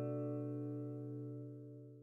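Background music: a strummed acoustic guitar chord ringing on and slowly dying away.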